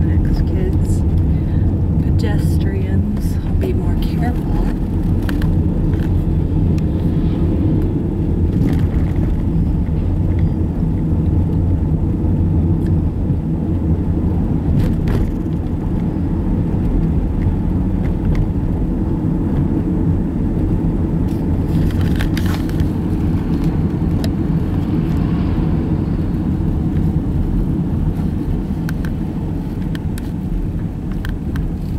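Car interior road noise while driving: a steady low rumble of engine and tyres, with a few brief rattling clicks scattered through.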